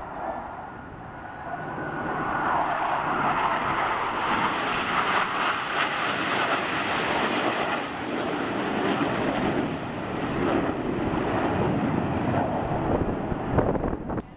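Jet engine noise from a formation of Blue Angels jets flying overhead. It swells over the first two seconds, holds loud and steady, and cuts off suddenly at the end.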